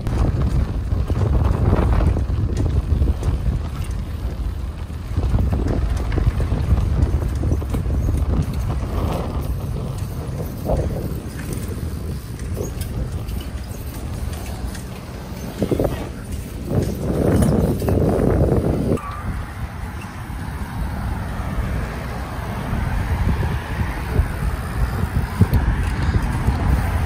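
BMX bikes rolling over concrete sidewalk and street, with wind rumbling on the microphone and irregular knocks and rattles from the bikes throughout.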